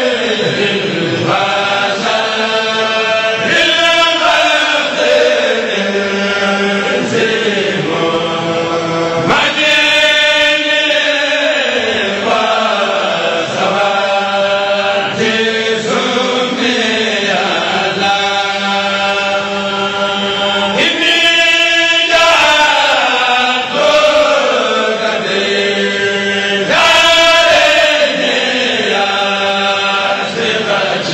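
A group of men chanting sindidi, a Mouride devotional chant, together in one voice. They hold long notes that slide down in pitch, and a new phrase starts every five or six seconds.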